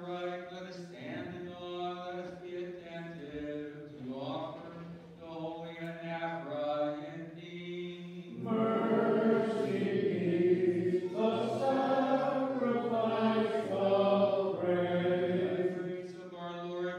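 Unaccompanied Byzantine liturgical chant in church, sung without instruments. A single man's voice chants at first, then from about eight seconds in a louder group of voices sings together.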